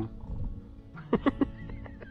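A man's short laugh, three quick bursts about a second in, over background music with steady held notes.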